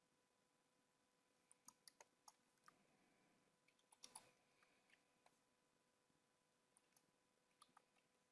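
Near silence, broken by faint scattered clicks from computer input devices at a desk, with a quick cluster of them about four seconds in.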